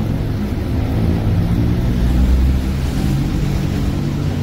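City street traffic: vehicle engines running and passing as a steady low rumble that swells about halfway through.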